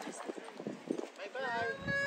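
Hard footfalls clicking on pavement as a group walks, with people's voices; a high voice comes in about one and a half seconds in.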